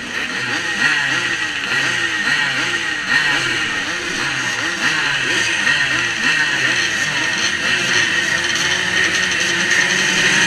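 A pack of 125 cc two-stroke twinshock motocross bikes revving on the start line, throttles blipped over and over so that many engine notes rise and fall on top of each other. The revving gets a little louder toward the end.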